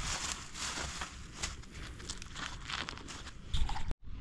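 Small irregular crackles and rustling from hands handling fried fish pieces, bread and a paper napkin, with a brief low thump near the end.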